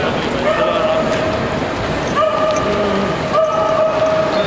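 Voices of several people talking and calling out, over a steady pitched tone that holds for a second or more at a time and breaks off twice.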